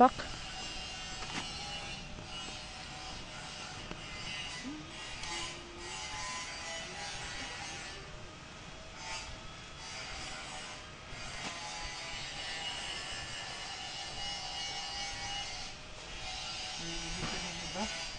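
Faint background of distant voices and thin, music-like tones, with no clear nearby work sound.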